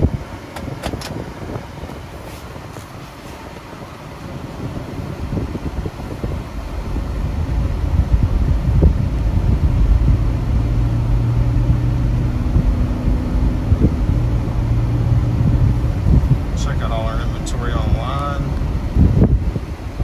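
Cabin noise of a 2012 Toyota Prius Plug-in pulling away from a stop. A low road and tyre rumble builds over the first several seconds as the car accelerates to about 25 mph, then holds steady with a low, even hum through the middle.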